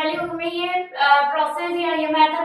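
Speech only: a woman lecturing.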